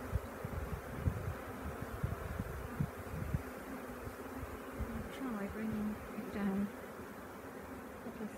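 A honeybee swarm buzzing as a steady hum, with single bees flying close past now and then, their buzz rising and falling in pitch, several times in the second half. Low rumbling runs under the buzz in the first few seconds.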